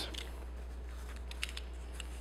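Quiet room tone with a steady low hum and a few faint ticks, the clearest about one and a half seconds in, as a craft knife is set against a strip of 10 mm EVA foam on a cutting mat to cut it.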